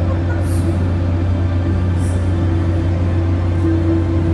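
Low, steady droning ambient music with several sustained tones, from the exhibition's soundtrack.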